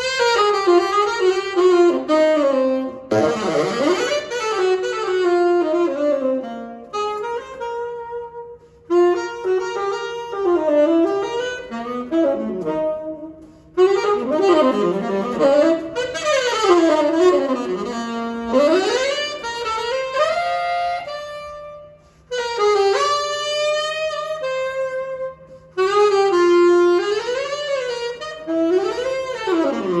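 Saxophone playing a jazz ballad solo: phrases of fast runs, slides and held notes with short breaks between them, over a faint sustained low note.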